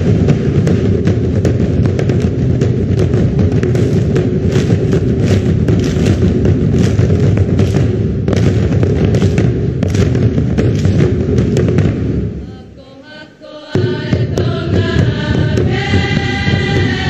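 A large group of girls' voices chanting a Tongan ma'ulu'ulu (sitting dance) over dense, sharp percussive beats. About twelve seconds in it breaks off into a brief lull, then the choir comes back in with sustained singing.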